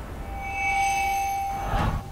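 Synthesized logo-sting tone: a steady ringing note with a few fainter high overtones that slowly fades, ended by a short rush of noise that cuts off suddenly.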